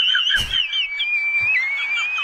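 A high, thin, wavering whistle-like tone with small chirps, from the TikTok's comedy sound, dipping in pitch about one and a half seconds in. A single sharp knock comes about half a second in.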